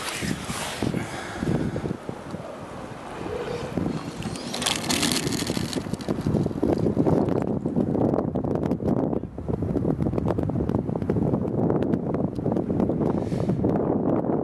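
Rushing wind buffeting a helmet-mounted camera's microphone as a rope jumper falls and swings from a 120 m tower. The rush grows gustier and louder from about four seconds in.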